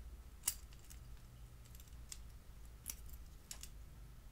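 A handful of faint, sharp clicks from a die-cast toy car's metal bottom plate and wire suspension spring being worked by hand as the spring is unclipped to free the wheel axles, the sharpest about half a second in.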